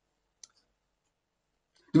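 Near silence, broken by one faint, short click about half a second in; a man's voice starts again at the very end.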